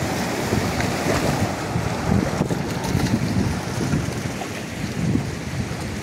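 Ocean surf washing and breaking against shoreline rocks, with gusts of wind rumbling on the microphone.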